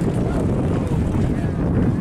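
Wind buffeting the microphone: a loud, uneven low rumble, with faint distant voices underneath.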